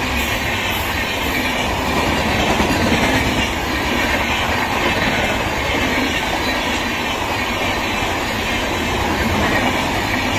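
Sealdah Rajdhani Express's LHB passenger coaches rolling past close by: a steady, even rumble of steel wheels running on the rails.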